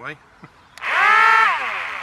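Twin small electric propeller motors of a Sky Hunter 230 RC flying wing run up briefly on the throttle: a whine that rises quickly about a second in, holds for about half a second, then winds down and fades.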